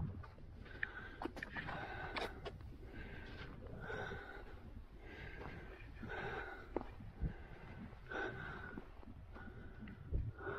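A hiker's breathing, heavy and rhythmic from climbing over boulders, at about one breath a second. A few sharp clicks of footsteps on rock are mixed in.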